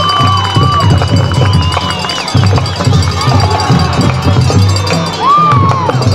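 Football stadium crowd cheering and shouting, with music playing underneath.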